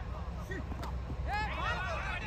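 Distant shouts and calls of cricket players on the field, with one short sharp click a little under a second in, over a steady low hum.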